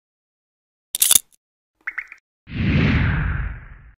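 Sound effects for an animated logo: a short sharp swish about a second in, a quick run of three or four pops just before two seconds, then a longer low whoosh that fades away.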